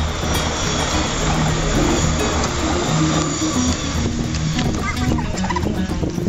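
An MTR East Rail electric commuter train passing close by: a heavy rushing rail noise that thins out about four seconds in as the train moves away. Background music plays throughout.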